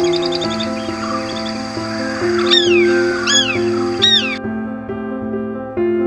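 Background music with a bird calling over it: a quick run of high notes at the start, then three loud, high calls about a second apart, each falling in pitch. The bird sound stops suddenly about two-thirds of the way through, leaving only the music.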